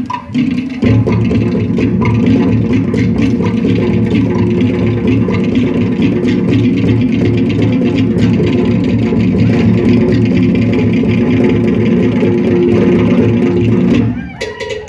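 Loud string-band music with strummed guitars and bass playing a steady, fast rhythm, dipping briefly just after the start and then running on.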